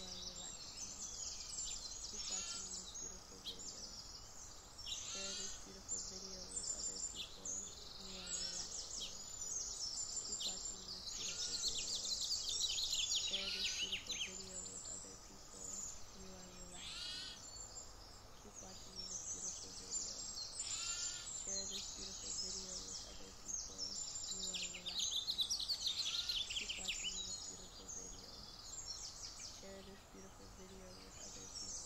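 Several songbirds singing, with overlapping phrases of rapid high chirping notes that come and go throughout, over a faint outdoor background hiss.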